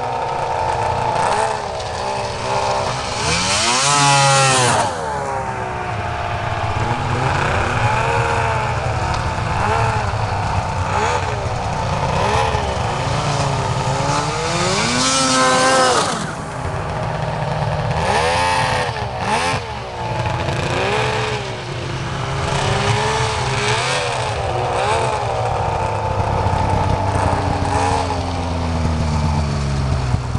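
Arctic Cat Crossfire 600 snowmobile's two-stroke engine revving up and down over and over, with its loudest, highest revs about four seconds in and again around fifteen seconds in, as the sled throws snow out of the ditch. Near the end the engine pitch drops away.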